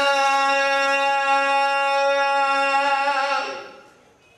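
A man's voice holding one long, steady sung note at an unchanging pitch, fading out about three and a half seconds in.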